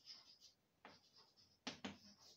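Chalk writing on a blackboard: a few faint short strokes and taps, the sharpest two close together near the end.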